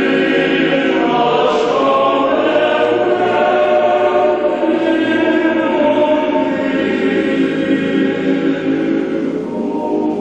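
Boys' choir singing unaccompanied in full, sustained chords. About nine seconds in, the high voices fall away and the lower parts carry on.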